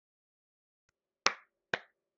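Two sharp, loud clicks about half a second apart, breaking near silence a little past halfway.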